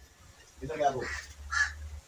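A voice speaking Vietnamese, a short spoken phrase of a channel-subscription plug.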